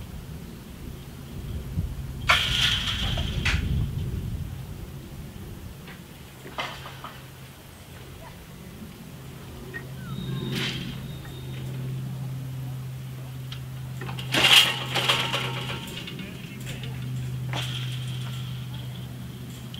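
Level-crossing barrier drive humming steadily at a low pitch as the boom arm rises, with no bell. Two brief, louder noisy sounds break in, one about two seconds in and one about two-thirds of the way through.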